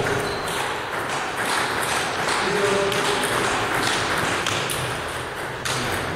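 Celluloid table tennis ball clicking against the bats and the table during a rally. The sharp clicks come at an uneven pace, under the hum of a large hall.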